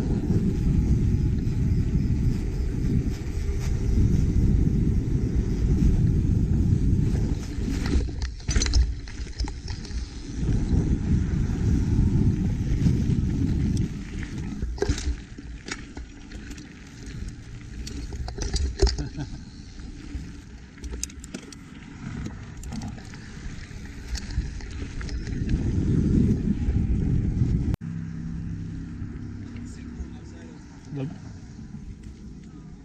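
Wind buffeting the bike-mounted camera's microphone, with tyre noise and scattered clicks and rattles from a mountain bike riding over pavement and a dirt trail. The rumble drops off suddenly near the end as the bike slows.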